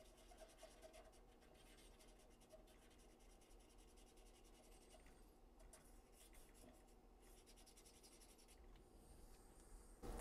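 Very faint, scratchy rubbing of a cotton swab scrubbing the solder pads of a circuit board where an IC has been desoldered, close to near silence.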